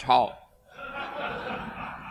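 A congregation chuckling softly, a low spread of laughter for about a second, just after a man's spoken word.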